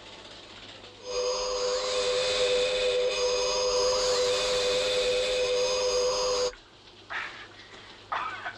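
Electronic science-fiction sound effect of alien UFOs in flight: a loud steady chord of tones with higher whistling tones gliding upward. It starts about a second in and cuts off suddenly past the middle.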